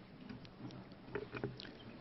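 Quiet room tone in a conference hall, with a few faint clicks and rustles and a faint trailing spoken "you" about a second in.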